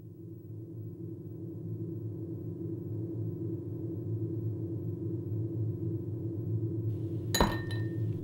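A steady low hum that swells gradually louder, and about seven seconds in, a single sharp glass clink with a brief ring.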